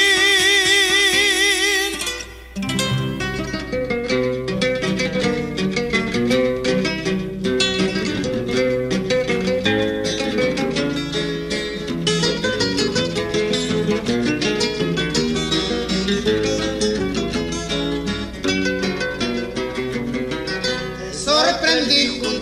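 Music: a final sung note held with vibrato ends one song, then after a brief break acoustic guitars play the next song's instrumental introduction, a plucked melody over a rhythmic accompaniment. A voice comes in near the end.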